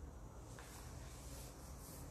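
Quiet room noise with a low steady hum, and faint soft handling of sugarpaste as hands press it onto a cake.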